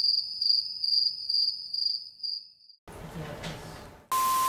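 Stock 'crickets' sound effect of crickets chirping: a steady high trill pulsing about twice a second, dubbed in to mark an awkward silence. It stops a little over halfway through and gives way to a short soft hiss.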